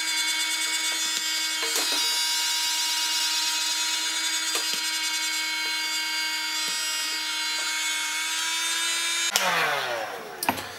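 Electric heat gun running steadily, its fan motor giving a high whine over a blowing hiss as it heats heat-shrink tubing. It is switched off near the end, and the whine falls in pitch as the motor spins down.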